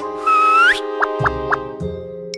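Children's background music with a steady beat, overlaid with cartoon sound effects. About a quarter second in comes a loud, brief rising whistle with a hiss, and then three quick plops in a row.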